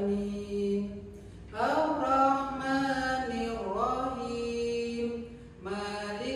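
A single voice chanting an Arabic Muslim prayer melodically, in long held notes that slide up into each new phrase, with a brief pause about a second in.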